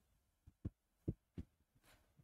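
Almost silent, with three or four faint, short, soft thumps about half a second apart in the middle.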